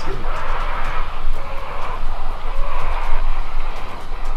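Unidentified wild animal letting out a loud, harsh, rough continuous scream that swells and eases a few times; it sounds massive and furious.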